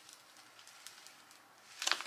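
Near quiet: faint rustle and light ticks from a clear plastic transfer sheet carrying cut vinyl lettering being handled, with a short louder rustle just before the end.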